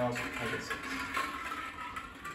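Plastic draw balls rattling and clicking against a glass bowl as a hand stirs through them.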